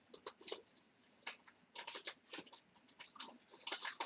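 Scattered quiet clicks, taps and rustles of small objects handled on a table, coming irregularly in short clusters.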